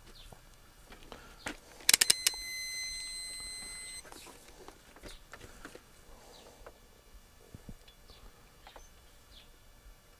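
A few quick clicks, then a steady high-pitched beep lasting about two seconds from a handheld digital multimeter as it is switched on for a battery voltage check. Faint bird chirps come and go.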